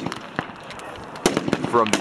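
Several rifle shots at uneven intervals from multiple shooters on the firing line, a few coming close together in the second half.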